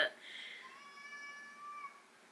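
A house cat's single drawn-out meow, faint and steady in pitch, lasting about a second and starting partway in.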